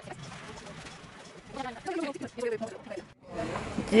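Indistinct voices talking in a busy room, with a few louder words about halfway through. The sound cuts off abruptly near the end.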